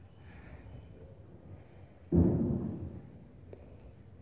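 A single dull thump about two seconds in, dying away over most of a second, as a knife is pressed down through a soft block of cornflour halwa onto a plate; a faint tick follows about a second later.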